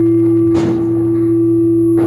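Live experimental drone music from electric guitar and electronics: a loud steady single-pitched tone held throughout over a low hum, with one sharp struck note ringing out about half a second in.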